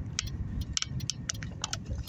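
Inside a slow-moving car: a low engine and road rumble with a few sharp, irregular light clicks over it.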